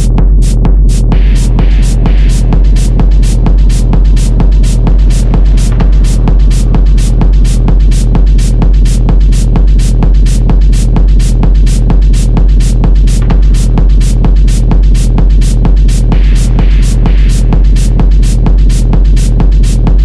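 Techno track with a driving four-on-the-floor beat at about two beats a second over a deep, constant bass drone. Brief hissing swells rise about a second in and again near the end.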